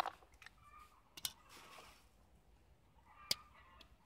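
Grafting hand tools being handled: three sharp clicks, one at the start, one about a second in and one past three seconds, with a short rustle between them.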